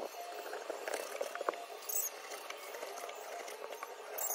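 A dull kitchen knife sawing through raw pork belly on a plastic cutting board, with a few sharp knocks of the blade against the board.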